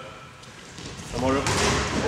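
A basketball free throw striking the hoop: a single short knock about one and a half seconds in, in a hall with voices around it.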